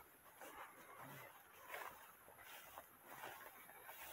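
Near silence: faint outdoor ambience with a few soft rustles.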